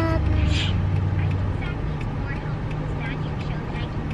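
Steady low rumble of a running car heard from inside the cabin, with a short voice sound right at the start and faint murmurs after.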